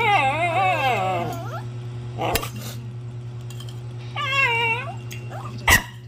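A pet animal making high, wavering calls: a long one at the start and a shorter one about four seconds in. Two sharp knocks break in, the louder one near the end, over a steady low hum.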